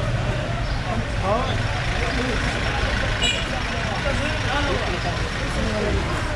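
Busy produce-market hubbub: many men talking at once in the background over a steady low rumble like an idling truck engine. A brief high-pitched squeak sounds about halfway through.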